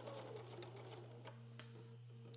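Domestic electric sewing machine stitching faintly, running in short stretches, over a steady low hum.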